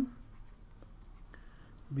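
Faint scratching and light ticks of a stylus writing by hand on a drawing tablet, over a low steady electrical hum.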